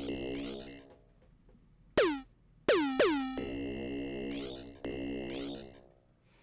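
Synthesizer notes played from Maschine MK3 pads while a new sound is being auditioned. A held chord opens, then three short notes about two to three seconds in whose pitch drops sharply, then a longer held chord that changes twice before cutting off near the end.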